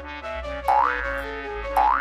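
Light background music of short plucked notes, with two cartoon 'boing' sound effects about a second apart, each a quick rise in pitch, for bounces on a trampoline.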